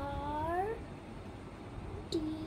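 A single short pitched vocal sound in the first second, dipping and then sliding upward in pitch, followed by quiet.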